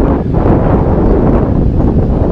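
Wind buffeting a GoPro camera's microphone: a loud, steady, rumbling rush of noise, heaviest in the low end.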